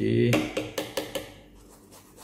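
A small brush scrubbing the damp fabric of a cup-shaped disposable respirator mask, a few quick scratchy strokes followed by fainter light brushing.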